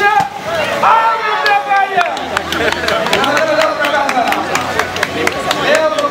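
Onlookers' voices calling out and talking over one another, with many short sharp clicks from about a second and a half in.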